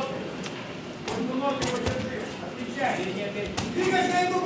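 Boxing gloves striking: several sharp smacks of punches landing, spread through the moment, with voices shouting in the background.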